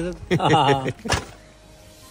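Men's voices: a few spoken words, then a drawn-out vocal sound that slides up and down in pitch for about half a second, followed by a single sharp click a little over a second in.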